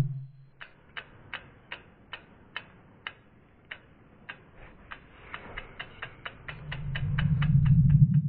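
Sound effects for an animated logo: a string of sharp ticks, a couple a second at first and then quickening, over a low rumble that swells louder over the last two seconds.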